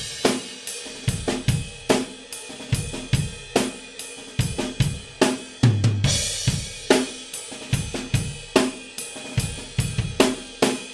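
Acoustic rock drum kit playing a steady groove of bass drum, snare and cymbals, with a big crash cymbal hit together with the bass drum about six seconds in.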